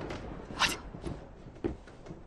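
Movement and handling noises: a short sharp swish a little over half a second in, then a dull thump near the end.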